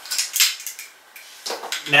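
Short clatter and clicks of a Feiyu G4 handheld gimbal with a GoPro being handled against its pouch, sharpest in the first half-second, then softer handling.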